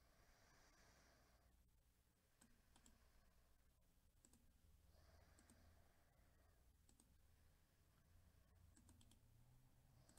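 Near silence, with faint computer mouse clicks every second or two.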